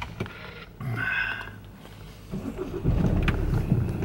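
Low rumble inside a moving car, swelling louder in the second half, with a brief hummed voice sound about a second in.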